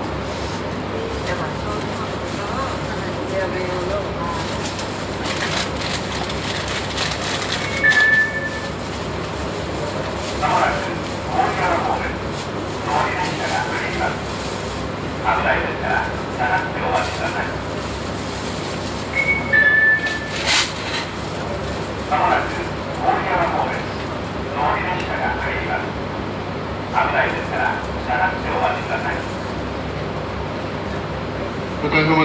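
Steady low hum inside a JR 719 series electric train standing still at a station. Voices talk from about ten seconds in, and a short descending two-note chime sounds twice, at about 8 and 19 seconds.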